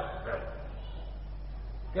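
A pause in an old lecture recording: a steady low mains hum and hiss of the tape, with a brief faint sound just after the start.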